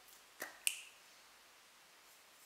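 Two short sharp clicks about a quarter second apart, from handling a small aerosol can of dry shampoo; the second click is louder, with a brief ring.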